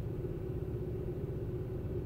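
Car idling, heard from inside the cabin: a steady low rumble with an even hum over it.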